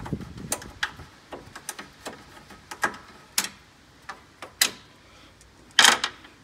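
Irregular clicks and knocks of hands and hand tools working on plastic car trim panels and their fasteners, about a dozen separate taps with the loudest near the end.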